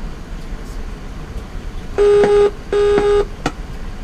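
Virginia-class submarine's diving alarm sounding two blasts, starting about two seconds in. Each is a loud, steady-pitched tone of about half a second, the signal for the boat to submerge, over a low steady background hum.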